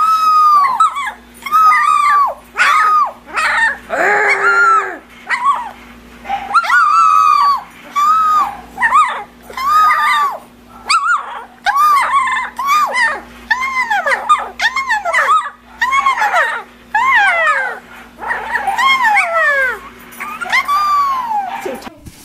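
Mini dachshund puppy crying out in a long run of short, high-pitched howl-like yips, about one a second. In the second half some calls fall steeply in pitch.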